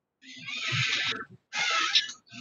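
Two bursts of harsh, hissy, garbled noise through a video-call participant's microphone, the first lasting about a second and the second starting near the end.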